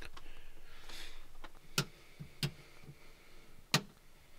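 Three sharp clicks, at about two seconds, half a second later, and near the end: rocker switches on a 12 V command-center switch panel being flipped.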